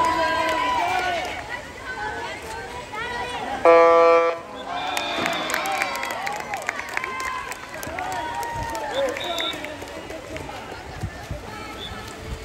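An electronic game horn sounds once for about half a second, about four seconds in, over shouting from the pool deck. Short, high referee's whistle tones follow about a second later and again near nine seconds.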